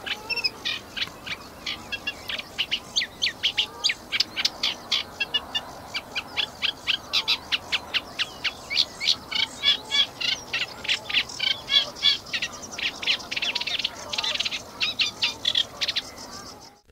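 Eurasian reed warbler singing its rough, chattering song: a steady run of short grating, partly squeaky notes, several a second, each repeated two or three times before a new one, sounding a bit like the scratching of a record.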